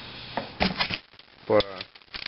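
A quick run of short metallic clicks as a tap is turned by hand to start a thread in the aluminum blow-off valve body.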